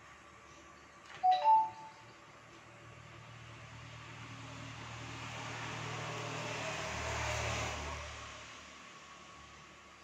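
A short, loud two-note electronic beep about a second in. Then a low rumble with an engine hum swells over several seconds and fades away, the shape of a vehicle passing by.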